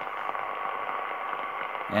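Yaesu FRG-7 communications receiver on the 10 m band putting out pulsating interference noise, with a faint steady tone in the background: a weak useful signal buried in the noise while the NR-1 noise blanker is still switched off.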